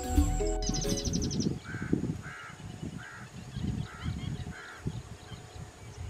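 Background music cuts off about half a second in. After a brief rapid high trill, a bird gives five short calls, one every half-second to second, over low irregular rumbling.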